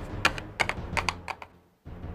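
Hard plastic toy figure tapped quickly across a hard tabletop: a run of about eight sharp clicks over a second and a half, over low background music.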